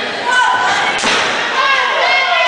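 A sharp smack in the wrestling ring about a second in, over raised, shouting voices.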